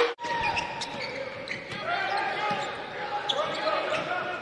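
Basketball arena game sound: a ball being dribbled on the hardwood under a steady murmur of crowd voices. It breaks off abruptly for a moment just after the start at an edit cut, then resumes quieter than the cheering before it.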